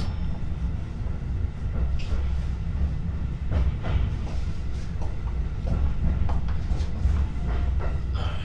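JR Joban Line local commuter train heard from inside the car, running with a steady low rumble as it pulls in alongside a station platform, with a few faint clicks from the wheels and car.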